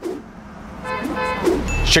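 Traffic-report intro sting: car sound effects with a horn honk about a second in over a short music cue, and a low rumble building near the end.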